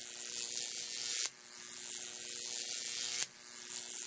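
A steady electric buzzing hiss, strongest in the high range over a faint hum, broken by a sharp click about a second in and again two seconds later, the hiss starting afresh after each click.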